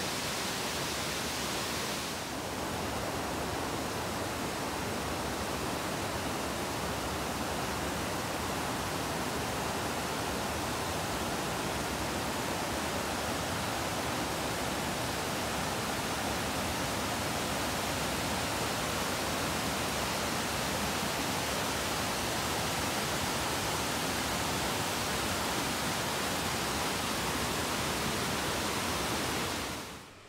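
Steady rushing of whitewater as the Presque Isle River pours over rock ledges and falls.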